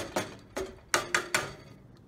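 A big kitchen knife knocking against a metal cooking pot as it stirs and stabs at noodles in broth. There are about six sharp clinks in two seconds, some with a short ring.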